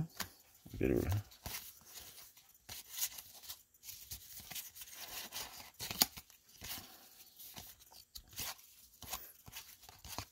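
Baseball cards being flipped through by hand, one after another: a string of quiet papery flicks and slides of card stock against card stock.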